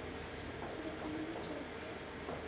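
Quiet room sound with a faint steady hum and a soft voice murmuring briefly around the middle.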